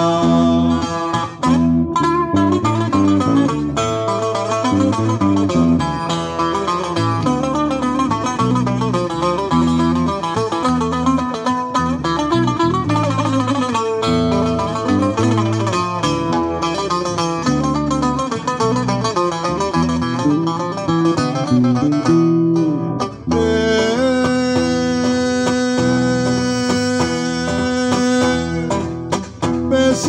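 Instrumental break of a Cretan folk song played live on plucked strings, a laouto and a guitar: a quick, busy melody, then a stretch of long held notes near the end.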